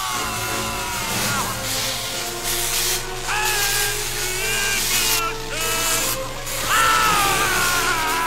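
Film sound mix: the continuous electric crackle and hiss of Force lightning under an orchestral score, with a man's drawn-out, wavering screams, loudest near the end.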